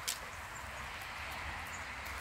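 Canada geese grazing at close range, their bills plucking at the grass with small clicks over steady background noise. One sharp click just after the start is the loudest sound.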